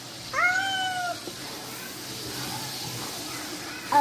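A cat meows once, a single drawn-out call of about a second near the start. After it comes faint stirring of lentils in a metal pot.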